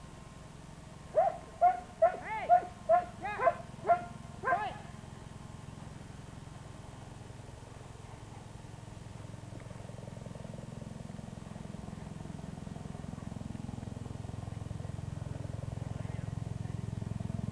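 A dog barks eight times in quick succession, about two barks a second, starting about a second in. A low rumble builds steadily toward the end.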